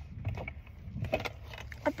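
Small makeup items clicking and rattling together as they are handled and a makeup brush is taken out of a makeup bag.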